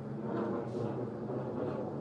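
Steady, noisy race-track ambience with a faint low engine hum running under it and no distinct impacts.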